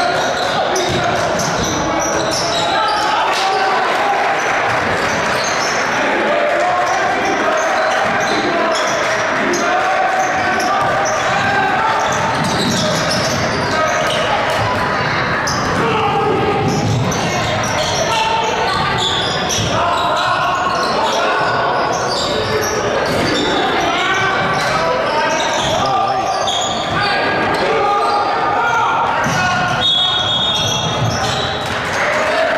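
Basketball game in a gym: a ball bouncing on the hardwood court and players' footwork amid steady crowd voices and shouting, echoing in the large hall.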